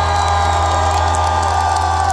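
A held chord on an amplified electric guitar ringing out steadily at the close of a live rock song, with a crowd cheering faintly underneath.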